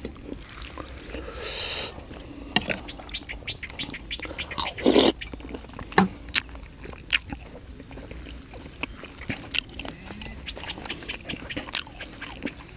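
Close-up eating sounds of a man eating rice noodles in green curry: wet chewing and slurping, with small clicks of a fork and spoon. There is a longer slurp or hiss just before two seconds and a louder one about five seconds in.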